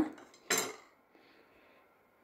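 Knife and fork scraping and clinking on a plate as braised beef is cut, with one short sharp scrape about half a second in, then only faint scraping.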